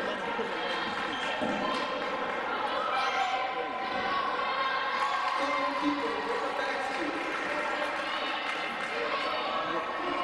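A basketball bouncing on a hardwood gym floor during live play, under continuous overlapping chatter of spectators' voices.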